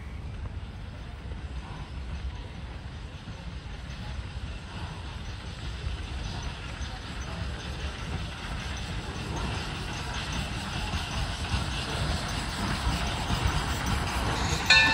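The steam locomotive Torch Lake approaching along the track, its running sound growing steadily louder as it nears.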